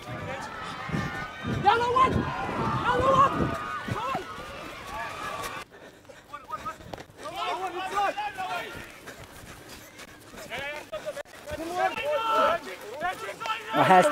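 Rugby players shouting short calls across the pitch during open play, in three spells with the loudest in the first few seconds, over open-field background noise.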